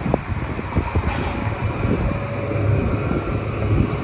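Wind rumbling on a handheld phone microphone outdoors, over a steady low hum that grows stronger in the second half.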